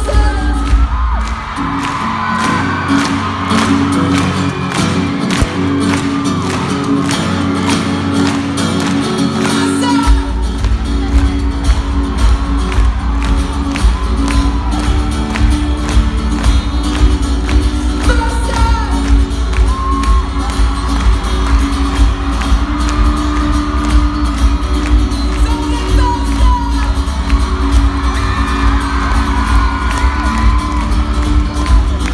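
A live pop concert heard from the audience: a male lead singer with guitar and band over a steady beat. The deep bass drops away about a second in and comes back in full about ten seconds in.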